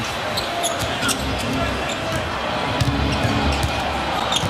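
Basketball dribbled repeatedly on a hardwood court, with short squeaks of sneakers on the floor.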